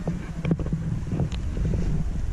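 Wind buffeting the microphone: a steady low rumble, with a few faint ticks.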